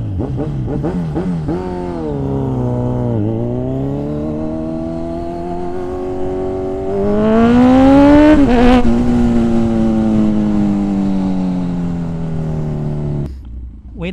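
Motorcycle engine accelerating under way, its pitch climbing and then dropping at gear changes about three seconds in and again near nine seconds. The engine is loudest around eight seconds and falls away abruptly about a second before the end.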